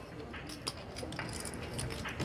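Poker chips being handled at the table, a scatter of light, irregular clicks and clinks over low room noise.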